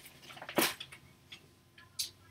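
Papers being handled on a tabletop: a single short rustle about half a second in and a few faint ticks.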